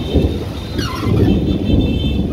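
A loud, uneven low rumble with rain noise, heard from inside a moving auto-rickshaw on a wet road. A short wavering higher tone comes about a second in.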